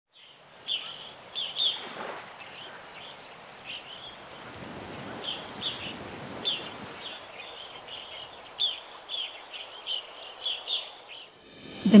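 Sea waves washing in, with birds chirping over them: short, high calls repeating irregularly about twice a second.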